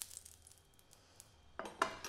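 A faint sizzle of a few drops of cooking oil in a hot pan, fading away, then about a second and a half in a quick run of clinks from a spoon against a dish, as the batter is about to be whisked.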